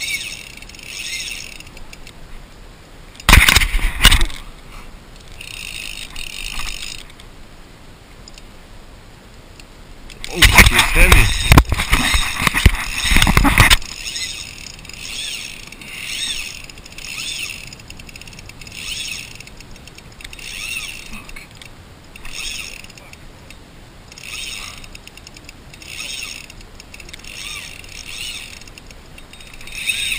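A fly reel's click-pawl drag ratchets in short bursts about once a second while a hooked bonefish is played on a bent fly rod. Two loud rushes of noise come about three seconds in and again for several seconds from about ten seconds in.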